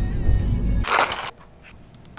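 Low rumble inside a moving car's cabin that cuts off abruptly just under a second in, followed by a short hissing burst and then a much quieter stretch.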